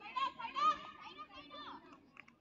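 Girls' voices shouting and calling out over one another, high-pitched and overlapping, with the loudest calls at about a quarter and three quarters of a second in.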